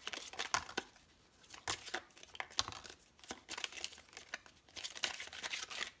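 A deck of oracle cards being shuffled by hand and dealt out onto a table: repeated papery rustles and light card slaps in irregular bursts.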